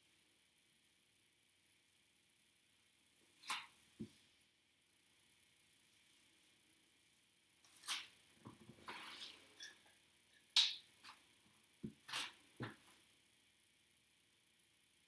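Pink nitrile-gloved fingers working through short hair and over the scalp: a handful of brief, faint rustles, with a few soft, dull knocks among them. The loudest rustle comes about ten and a half seconds in.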